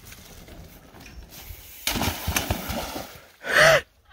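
A mountain bike and rider crashing into a shallow creek: a sudden loud splash and clatter about two seconds in, followed near the end by a short, loud cry from a person.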